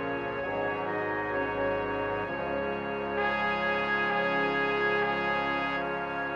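Concert band playing slow, sustained wind chords: the clarinets, bassoons and horns move from chord to chord, then piccolo, flute and oboe join a little after three seconds on a long held chord under a fermata.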